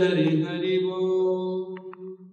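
A long drawn-out 'jai!' shout from male voices, held on one note and dying away near the end, answering a call of glorification.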